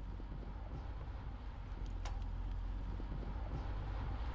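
A car driving steadily on a highway, heard from its open tailgate: a low rumble of road and wind noise. There is a single faint click about two seconds in.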